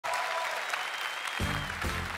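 Audience applauding in a large hall, with music with a low beat coming in about one and a half seconds in.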